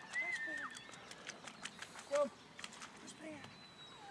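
A dog giving a few short, faint whines: one about two seconds in and a fainter, lower one a second later.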